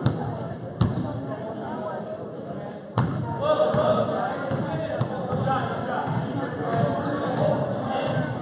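Basketball bouncing on a gym floor, a few sharp, irregular bounces during live play, with spectators talking throughout.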